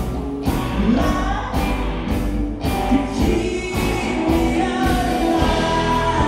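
Live rock band playing through a PA, with sung vocals over a steady drum beat of about two hits a second.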